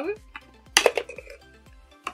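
Hard plastic salad container being pulled apart, with a quick cluster of plastic clicks and clacks about a second in as the lid comes off the cup, and a few lighter clicks around it.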